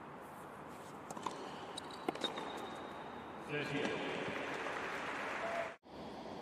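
Steady tennis court ambience with a few sharp knocks of a tennis ball, two pairs in the first half. From about halfway through, a commentator talks over it.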